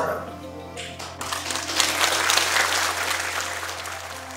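Audience applauding, the clapping starting about a second in and thinning towards the end, over soft background music with steady held notes.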